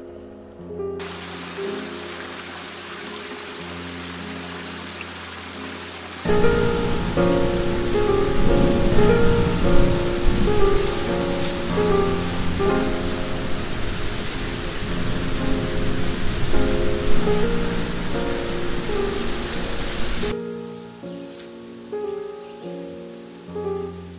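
Rain falling, light at first, then much heavier from about six seconds in, stopping suddenly near the end, over soft piano music.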